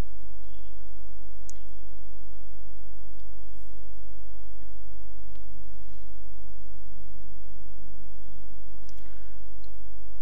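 Steady low electrical mains hum, with a few faint clicks as plugs and sockets are handled.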